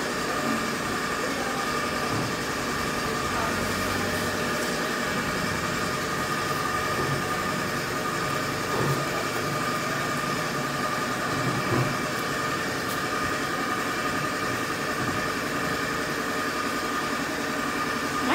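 A motor running steadily: a constant hum with a thin, unchanging whine on top.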